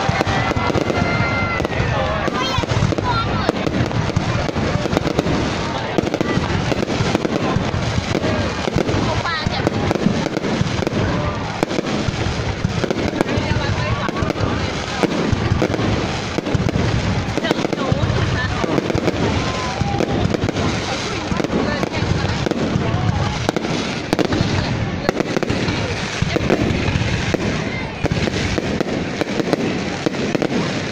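Aerial firework shells bursting, with dense, continuous crackling and popping from the glittering stars throughout.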